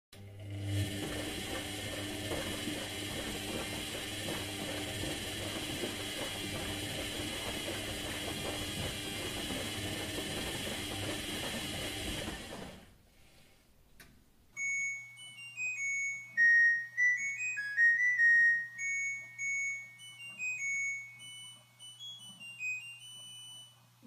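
A washing machine running, a steady mechanical churning and rattling, for about the first thirteen seconds. After a short gap and a click, a sparse melody of high single beeping notes plays over a low steady hum as the song's intro.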